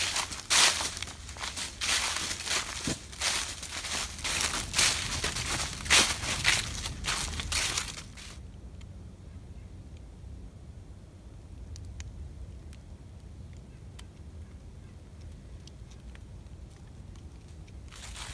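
Footsteps crunching through deep dry fallen leaves, about two steps a second. A little over eight seconds in the crunching stops abruptly, leaving only a quiet low rumble with a few faint ticks.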